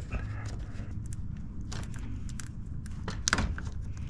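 Small plastic clicks and rattles of a wiring-harness connector and its push-in Christmas-tree clip being worked loose by hand, with one sharper click a little past three seconds in, over a steady low hum.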